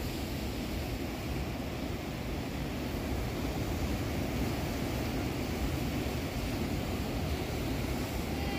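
Steady rumble of wind on the microphone mixed with ocean surf washing over the rocks.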